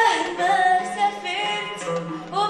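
A young girl singing solo into a stage microphone, holding a few wavering notes that glide between pitches, with the voice far louder than any accompaniment.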